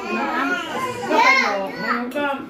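A young child's high-pitched voice calling out twice in short, rising-and-falling cries, with other voices around it.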